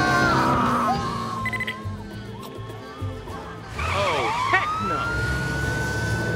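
Police car siren starting up about four seconds in: a rising wail that climbs and then holds a steady high tone, over background music.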